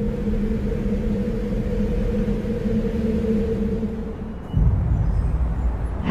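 A low rumble with a steady hum in it. About four and a half seconds in, the hum stops and a louder, deeper rumble takes over.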